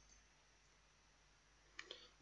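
Near silence: room tone, with two faint short clicks near the end.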